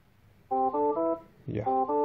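DeltaV Operate's alarm annunciation sound: a short tune of stepped electronic tones that plays twice, about a second apart, signalling that the process value has crossed its high alarm limit.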